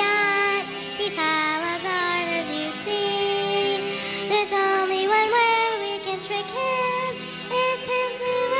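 A young girl sings a solo melody into a handheld microphone, holding long notes, over musical accompaniment.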